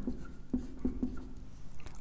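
Marker writing on a whiteboard: a few short pen strokes.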